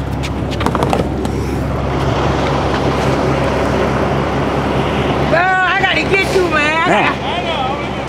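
A car engine idling close by, a low steady hum that cuts off suddenly about five seconds in; a voice follows near the end.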